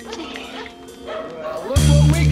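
A dog yelping and whimpering over a faint music bed, then a hip-hop beat with heavy bass comes in near the end.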